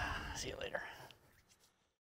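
Faint, whispery voice sounds fading out over about a second and a half, with a small click partway through, then the sound cuts to silence.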